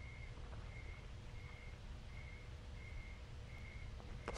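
A quiet pause: low room noise with a faint steady hum, and a soft, short high chirp that repeats about every 0.7 seconds.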